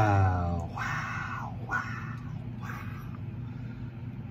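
A woman's held sung note fades out within the first second as the song is paused, leaving a low steady hum and a few short, soft breathy exhales from a man.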